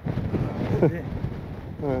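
Strong, gusty wind buffeting the microphone, a rough low rumble that rises and falls throughout.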